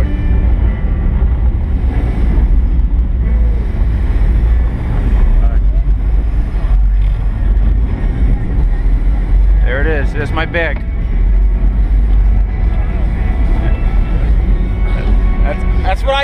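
Twin Mercury Racing 1350 V8s of a 48-foot MTI offshore catamaran idling with a steady low rumble. Voices call out about ten seconds in and again near the end.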